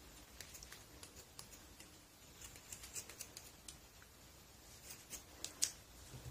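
Scissors snipping through a folded cotton pad: a scatter of faint short snips and clicks, with a couple of louder clicks shortly before the end.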